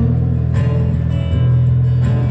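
Live acoustic guitar playing between sung lines, heavy on sustained low notes.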